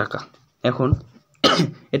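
A man's voice in short bursts of speech, with a brief sharp cough about one and a half seconds in.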